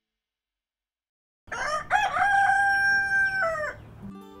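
A barred black-and-white rooster crowing once: a single long crow of about two seconds, starting about a second and a half in, held on one pitch and dropping away at the end.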